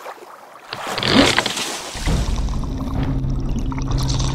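A splash about a second in as a body plunges into water, followed by a muffled underwater rumble with steady low tones.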